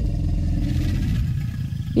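A low, rumbling dinosaur growl, the T-Rex's voice, held steadily for nearly two seconds and fading out just before the end.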